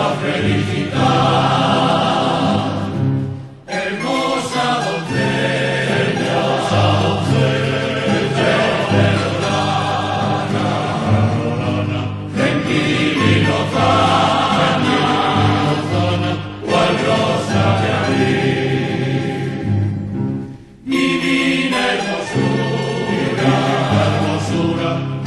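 A song sung by a choir, pausing briefly twice between phrases.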